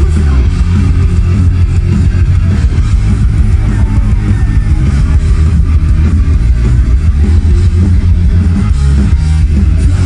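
A punk rock band playing live at full volume: distorted electric guitars, bass and drums, heavy in the low end as heard from within the crowd.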